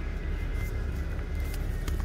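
Shop ambience: faint background music over a steady low rumble, with a couple of light clicks.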